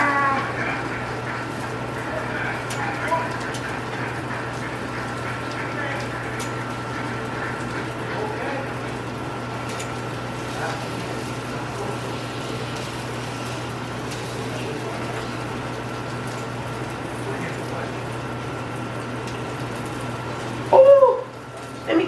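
Burger patties and onion slices frying in a pan: a steady sizzle over a low hum. A short voiced sound comes near the end.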